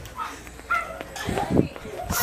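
Indistinct voices and movement noise, with a short high-pitched sound under a second in and a low thump about a second and a half in.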